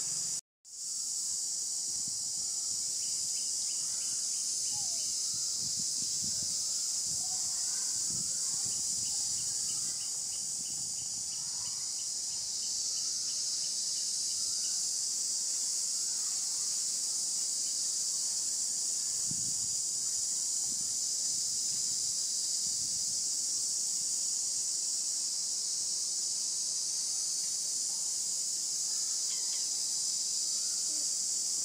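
Steady, high-pitched insect chorus that holds unbroken except for a brief dropout about half a second in.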